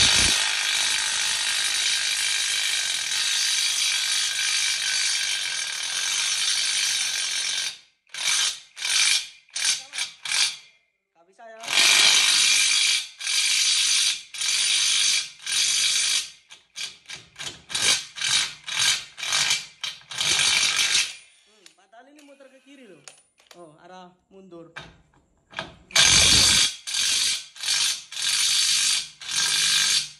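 Knock-off Makita-style 18 V cordless impact wrench hammering in reverse on a nut tightened to 700 Nm. It runs for about eight seconds, then in short bursts, then another long run and more bursts. After a pause of a few seconds it starts a further long run and more bursts near the end. The nut does not break loose: the tool lacks the torque to undo it.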